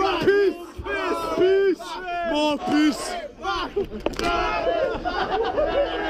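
A group of voices chanting in short, rhythmic shouts, then breaking into one long drawn-out shout about four seconds in.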